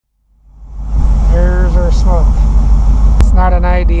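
Ford 460 big-block V8 idling with a steady low rumble, fading in over the first second. A single sharp click sounds about three seconds in.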